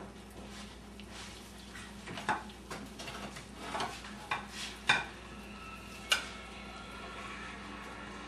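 Serving utensil clinking and scraping against a glass baking dish and a plate as scalloped potatoes are scooped out: a scattering of sharp clinks, a few ringing briefly, the loudest about five and six seconds in.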